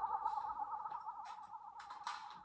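Electronic warbling tone from a science-fiction TV soundtrack: two high pitches wobbling rapidly together and slowly fading, a control-console signal sound effect.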